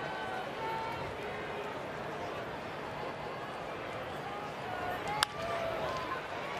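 Steady murmur of a ballpark crowd, then a single sharp crack about five seconds in: a bat hitting a pitch into play.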